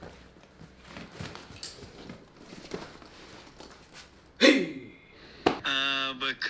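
Soft rustling and light clicks of a bag and gear being handled during packing. About four seconds in comes one short, loud sound that falls in pitch, and a click follows just before a voice starts near the end.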